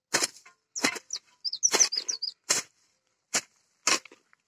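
A hoe blade scraping and chopping through grass and weeds on dry soil, a series of short strokes about every half second to second, the blade dragged along the ground rather than lifted. A few short bird chirps sound in the middle.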